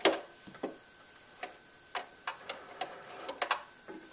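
Irregular light clicks and knocks from a home sewing machine being handled by hand, about a dozen over four seconds, with the motor stopped. They come as the handwheel is turned and the fabric is taken out from under the presser foot.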